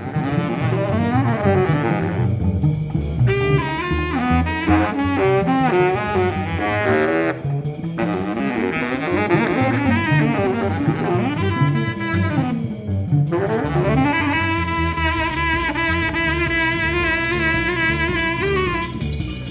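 Large jazz ensemble playing, with a saxophone out front over double bass and drums. The line moves in bending runs broken by short pauses, then settles into long held notes with vibrato near the end.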